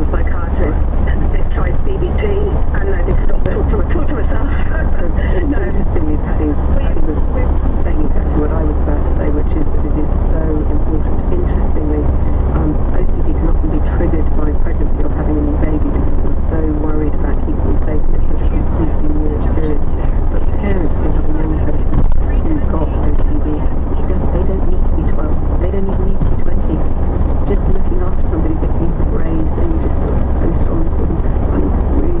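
Steady low road and engine rumble inside the cab of a 2012 Ford Transit van cruising at motorway speed.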